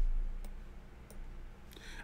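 A few faint clicks, two of them about a second in, over a deep hum that fades away in the first half second.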